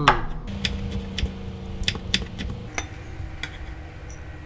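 A kitchen knife giving a few irregular knocks and light clinks against a wooden cutting board and a ceramic bowl as the chopped chili peppers are gathered up, under a faint low steady hum.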